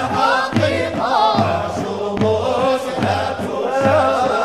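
A vocal ensemble chanting a Sufi samaa devotional song, several voices together in long ornamented melodic lines over a steady low repeating note.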